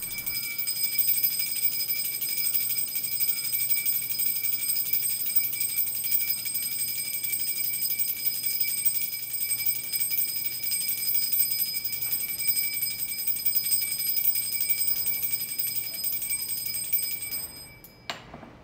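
A small brass puja hand bell rung rapidly and without pause for the aarti: a bright, steady, shimmering ring that stops shortly before the end.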